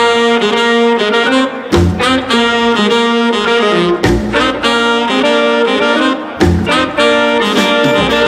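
Live funk-jazz band with a saxophone leading in long held notes over keyboard, electric guitar, upright bass, drums and congas.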